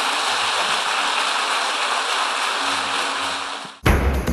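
Large audience applauding steadily, a dense even clatter of many hands. It dies away suddenly just before the end as music cuts in.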